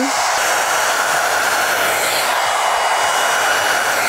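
Plavogue One-Step Hair Dryer, a corded hot-air round brush, running and blowing air through damp hair: a steady rush of air with a faint high whine.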